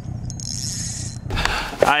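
Boat's outboard motor running steadily, with a brief high hiss over it, cut off suddenly a little over a second in by wind noise on the microphone; a man starts speaking near the end.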